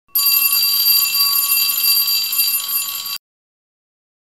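Electric school bell ringing steadily and loudly for about three seconds, then cutting off suddenly.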